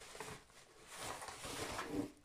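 Faint rustling of a thin plastic bag and cardboard box being handled as a bagged book is lifted out, picking up about a second in.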